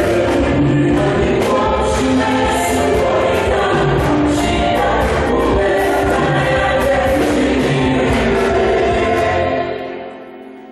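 A choir singing a gospel hymn with instrumental backing, the music dying away near the end.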